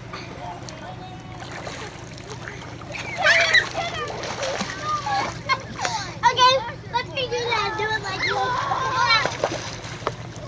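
Children shrieking and calling out while splashing in shallow lake water, with water splashes. The first few seconds are quieter, then the shrieks and splashes come in several loud bursts.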